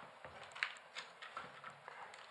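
Faint small clicks and taps of fingers handling servo wires and the mechanism inside a model aeroplane's fuselage, about five light ticks over two seconds.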